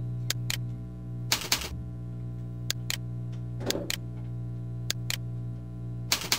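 Computer mouse and keyboard clicks: a string of short sharp clicks, several in quick pairs, with a steady low electrical hum beneath.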